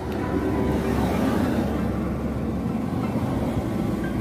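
Steady cabin noise inside a moving Perodua Axia: engine and road noise, swelling slightly in the first second.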